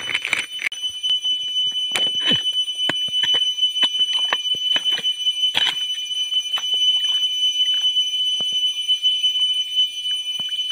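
Steady high-pitched drone of forest insects, over irregular wet clicks and squelches of a bare hand digging into waterlogged mud.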